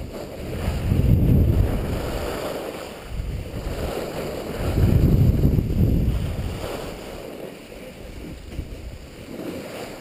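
Wind buffeting a skier's camera microphone while skiing downhill, with skis hissing over packed snow. It comes in two loud surges and eases off over the last few seconds as the skier slows.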